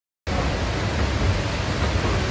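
Steady, even rushing noise after a dead-silent dropout of about a quarter second at the start.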